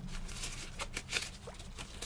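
Quick, irregular small clicks and taps close to a microphone, several a second, ASMR-style.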